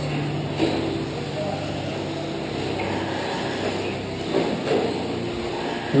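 Radio-controlled race trucks running laps on an indoor dirt track, with a steady mixed running noise in a large hall.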